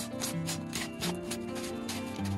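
Screw-on plastic lid of a plastic jar being twisted by hand, plastic rubbing on plastic in a quick run of short scrapes, over background music.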